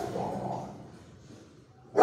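Dog barking in a kennel run with hard walls. A loud bark just before rings on into the first moments, a weaker bark follows within the first half second, and the next loud bark starts right at the end.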